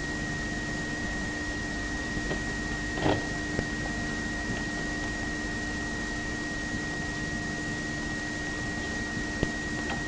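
A held moment of silence in which only the steady hiss and hum of an old VHS recording and sound system is heard, with a faint high steady whine. One brief, faint sound comes about three seconds in.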